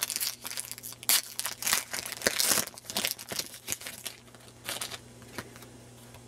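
Foil Pokémon booster pack wrapper being torn open and crinkled by hand: a quick run of sharp, irregular crackles that is busiest in the first three seconds and dies away about five seconds in.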